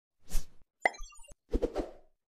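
Logo-intro sound effects: a short burst of noise, then a sharp hit followed by a scatter of short high bell-like tones, then three quick thuds near the end.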